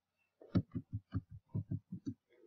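Computer keyboard typing: a quick run of about nine muffled, low keystrokes, starting about half a second in, as the words "and your" are typed.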